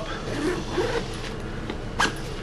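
Zipper on a duffel bag's side shoe compartment being pulled open, a steady rasp of the zipper running along its teeth.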